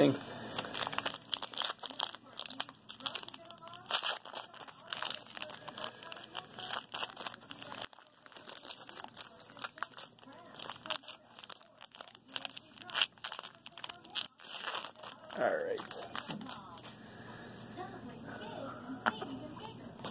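Foil wrapper of a trading-card pack crinkling and tearing as it is opened by hand, a dense crackle that thins out for the last few seconds.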